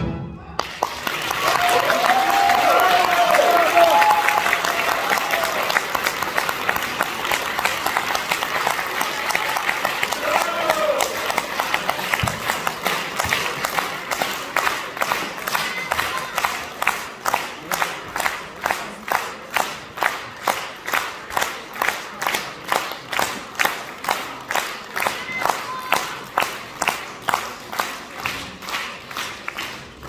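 A concert hall audience applauding, loudest in the first few seconds, with a few shouted cheers. About halfway through the clapping falls into slow rhythmic clapping in unison, about two claps a second.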